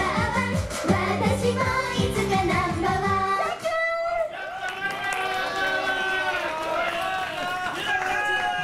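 Live J-pop idol song, a girl singing into a microphone over a backing track with a steady beat and bass; the music ends about three and a half seconds in, and voices call out over the stage sound for the rest.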